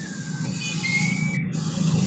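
Steady low rumbling background noise from an open microphone on a video call, louder than the talk around it, with faint high whistling tones over it.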